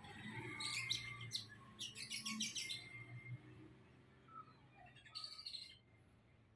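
Small birds chirping in short bursts: a few chirps about a second in, a quick run of chirps around two to three seconds in, and another cluster near the end, over a faint low background hum.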